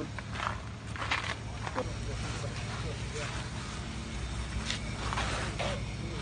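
Indistinct background voices and short scuffing sounds over a steady low hum.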